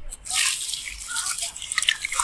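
Hands crumbling a dry sand-cement lump into a basin of water: a gritty hiss of sand and dust falling into the water from about half a second in, with sharper crackling crunches near the end as the lump breaks up in the water.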